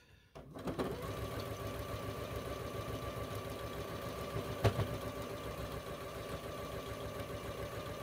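Domestic sewing machine running at a steady speed, stitching a seam through pieced quilting cotton, with a steady whine. It starts about half a second in, and there is one sharp click near the middle.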